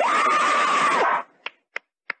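High-pitched cartoon laughter from an animated character, its pitch swooping up and down over and over, cutting off about a second in. It is followed by three or four short faint clicks.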